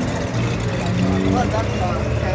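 Faint background voices over a steady low rumble of outdoor noise.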